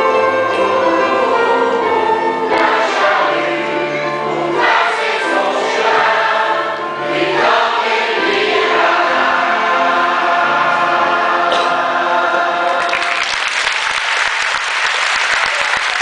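A children's choir with adult voices singing a French song; about three seconds before the end the singing gives way to audience applause.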